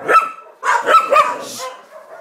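Small terrier-type dog barking, several short sharp barks in quick succession.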